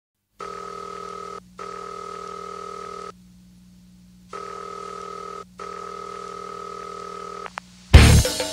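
Telephone-style electronic ringing tone as the opening of a rock track: two rings, a pause, then two more, over a low steady hum. Just before the end the full band comes in with a loud hit.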